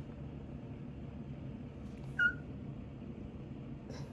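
Steady low room hum, with one brief high-pitched chirp or squeak about two seconds in.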